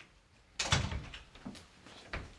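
Knocks on wood: a loud cluster of thumps about half a second in, then a single fainter knock about a second later.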